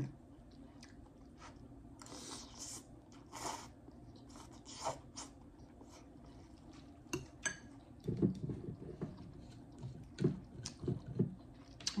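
Close-up eating of hot instant ramen noodles: quiet chewing and mouth sounds, with a few light clinks of a metal fork against a glass bowl. The mouth sounds grow more frequent in the last few seconds.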